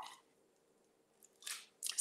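Mostly quiet, then two short mouth sounds about one and a half seconds in, from a woman sipping and swallowing a drink from a glass.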